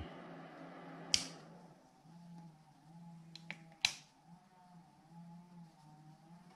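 Sharp plastic clicks from the front-panel switches of a bench power supply built from a computer ATX supply: one about a second in and another near four seconds, with a few lighter ticks just before it, over a faint low hum.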